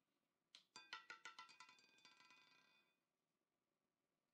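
Electronic chime from the online roulette game's interface: a quick run of about a dozen bell-like notes that fades out after a couple of seconds.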